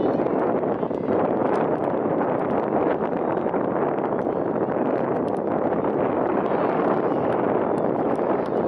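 Steady wind noise on the microphone: a loud, even rush, with a few faint short clicks.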